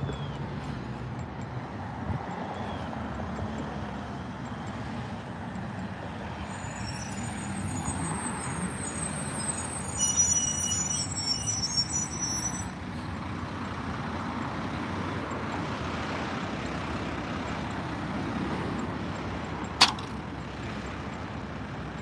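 Road traffic passing on a busy multi-lane road, growing louder as a garbage truck goes by about halfway through, with a high-pitched squeal for a couple of seconds as it passes. A single sharp click comes near the end.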